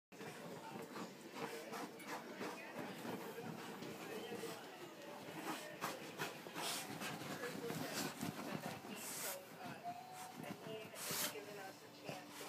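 A pug nosing and digging into pillows and bedding: rustling fabric mixed with the dog's sniffing and snuffling breaths, with two short louder rustles near the end.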